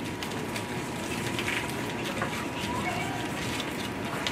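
Classroom background noise: a steady room hum with faint, distant children's voices.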